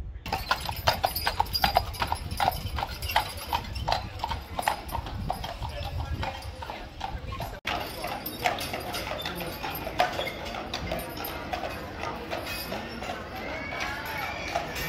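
Horses' hooves clip-clopping on a paved street at a walk, a steady beat of about three strikes a second from a horse-drawn dray. The beat breaks off for a moment just past the middle and then carries on.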